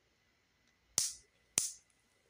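Two sharp clicks of small plastic building-brick pieces being pressed and snapped together by hand, a little over half a second apart.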